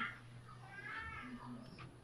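A faint drawn-out animal call in the background, a single cry that rises and then falls in pitch, comes after the tail of a shouted word at the very start.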